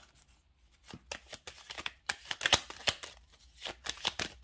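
A deck of fortune-telling cards is handled and shuffled by hand. After about a second it gives a run of irregular, sharp card clicks and slaps.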